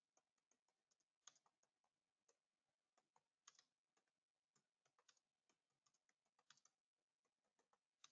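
Very faint typing on a computer keyboard: a run of irregular keystroke clicks as a sentence is typed.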